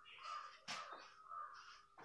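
Faint squeaks and scrapes of a marker on a whiteboard as letters are written: a run of short strokes, each a few tenths of a second long.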